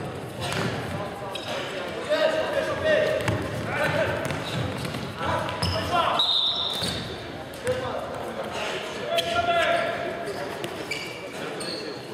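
Indoor futsal play echoing in a large sports hall: players' voices calling out, and the ball thudding on the wooden floor and off players' feet.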